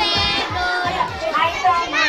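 Young children's voices chattering and calling out over background music with a steady beat, which fades out during the first second and a half.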